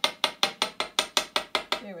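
Hollow metal hole punch rapped quickly against a wooden tabletop, about five sharp ringing taps a second, to knock out the punched fabric plugs jammed inside it.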